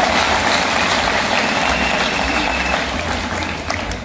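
Audience applauding: a dense, steady clatter of many hands clapping that dies down near the end.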